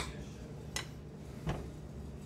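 A spoon clicking against the dish three times, about three-quarters of a second apart, as pumpkin pie is scooped out into a stainless steel mixing bowl.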